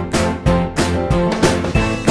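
Background music with a steady beat, about three beats a second, and sustained instrumental notes.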